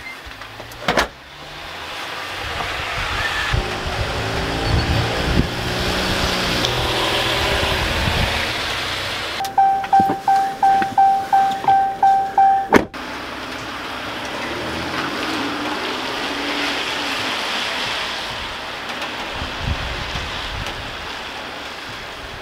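A door thuds shut about a second in, followed by a steady hiss of rain. Around the middle, a car's warning chime beeps about ten times, roughly three a second, and a car door slam cuts it off; the rain hiss then carries on to the end.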